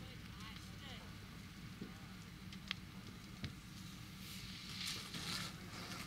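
A house fire burning, with a steady low rumble and a couple of sharp pops; faint distant voices in the background.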